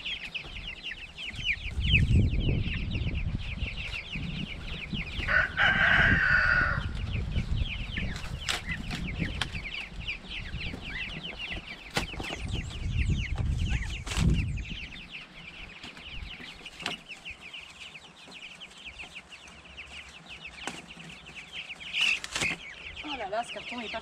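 A flock of about forty three-week-old broiler chicks peeping steadily all through. About five seconds in, a louder, longer call stands out over the peeping, and a low rumbling noise with a few knocks runs through the first half.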